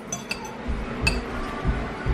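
Metal spoon and fork clinking against a ceramic plate while scooping up rice: two light ringing clinks right at the start and another about a second in, with soft low thuds in between.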